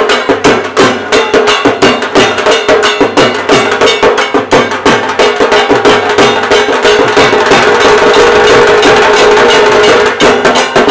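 Dhak drums, the big stick-beaten barrel drums of Durga Puja, played together in a fast, loud rhythm of several strokes a second over a steady ringing tone. About seven seconds in, the beating runs together into a continuous roll.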